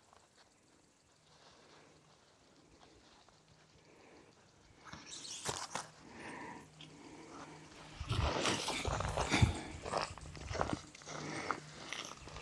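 Handling noise: rustling, scuffing and light knocks of hands working hammock cord and fabric. It is quiet at first, then comes and goes from about five seconds in, and gets busier and louder in the last few seconds.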